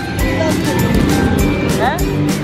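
A film soundtrack playing through cinema speakers: music with a steady beat and voices over it, with a short rising swoop near the end.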